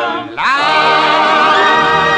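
A vocal group singing in close harmony with orchestra. After a brief dip about a third of a second in, the voices slide up into a held chord with vibrato.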